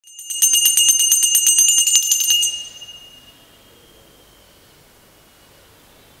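Small brass puja hand bell (ghanta) shaken rapidly, about ten strikes a second, for roughly two seconds, then its bright high ring dies away over the next second, leaving faint room tone.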